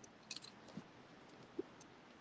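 Faint handling noise of fingers on the phone that is recording: a quick cluster of small clicks about a third of a second in, then a couple of soft taps, the last the loudest. Otherwise near silence, with no guitar being played.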